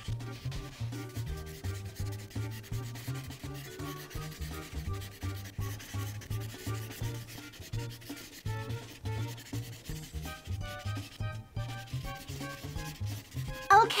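Prismacolor marker tip scrubbing back and forth on paper in quick, repeated strokes while shading a large area, with faint background music.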